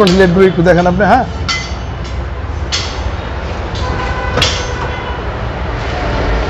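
A man speaks briefly, then a Toyota VVT-i petrol engine idles with a steady low rumble. A few sharp clicks or knocks come through, about a second and a half, three and four and a half seconds in.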